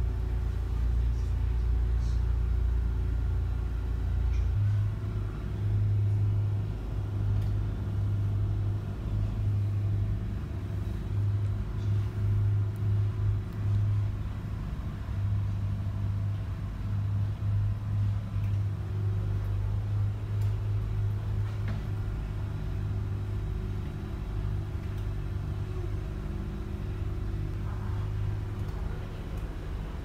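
Water taxi's engine running underway, a steady low rumble heard from inside the cabin. Its deep drone changes about four and a half seconds in, then holds.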